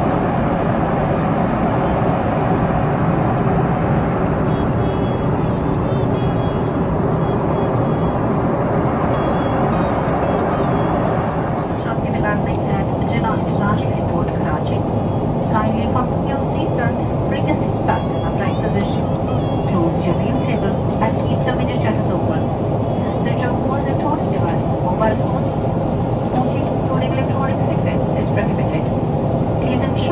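Aircraft cabin noise heard from a window seat beside a Boeing 777-300ER's GE90 engine: a steady, loud rush of jet engine and airflow. From about twelve seconds in, indistinct voices and small clatter sit over it.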